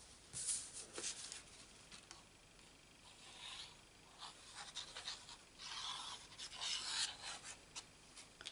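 Sheets of cardstock being handled on a work surface: paper rubbing and sliding in short, irregular bursts, busiest in the second half.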